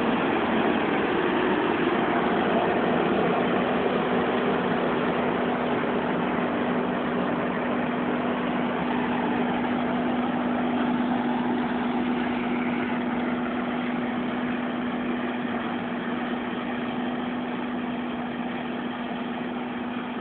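Claas Mega 204 combine harvester running while it cuts barley: a steady mechanical drone with one held tone, slowly fading as the machine moves away.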